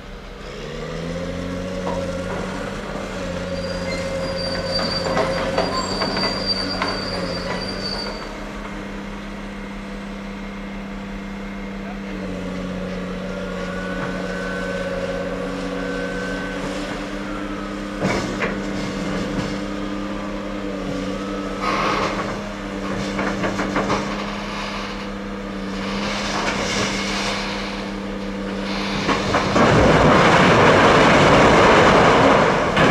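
A heavy diesel engine revs up about a second in and then runs steadily under load, with a few sharp metallic knocks along the way. Just before the end, a tipped side dump car's load of large rocks pours out with a loud rushing crash.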